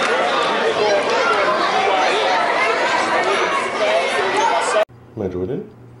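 Crowd chatter: many voices talking at once, echoing in a large hall. It cuts off abruptly near the end, giving way to a quiet room with a low hum and one short voice sound that falls in pitch.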